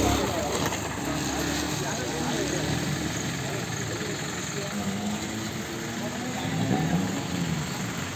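A motorcycle engine running as a dirt bike rides along a muddy trail, its pitch rising and falling, over a steady noisy background. Indistinct voices are mixed in.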